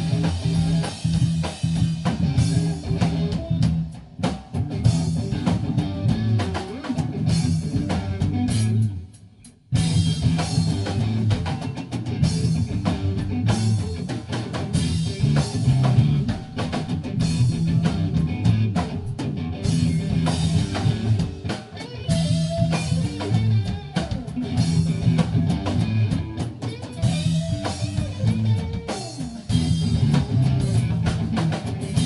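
Live rock band playing electric guitar and drum kit, heard from within the audience. The music breaks off briefly about nine seconds in, then comes straight back in.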